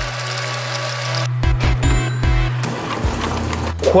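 Wire whisk beating pecorino and pasta water into a cream in a stainless steel bowl, the wires scraping against the metal, over background music with a steady low bass note.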